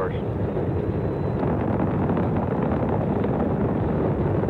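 Saturn V rocket's five first-stage F-1 engines climbing out after liftoff, heard as a steady, even rumble with no breaks.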